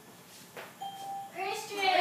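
A short electronic ding from a smartboard's random name picker as it lands on a name, the signal that a name has been chosen. Children's voices start up right after.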